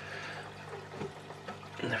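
Water trickling in an aquarium over a steady low hum, with a couple of faint ticks.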